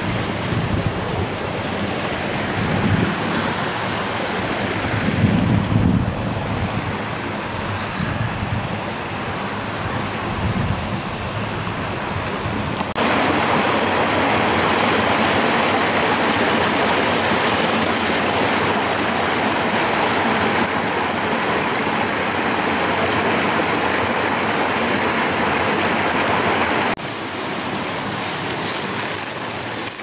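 Small mountain stream running over rocks, a steady rush of water. About thirteen seconds in it gets suddenly louder and brighter, as from right at the water's edge, and drops back a few seconds before the end.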